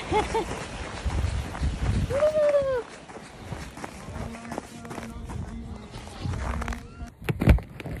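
Footsteps crunching on packed snow as a child's snow tube is towed along by its strap, with two short voiced calls, one at the start and one about two seconds in. Near the end come a few sharp knocks from the phone being handled.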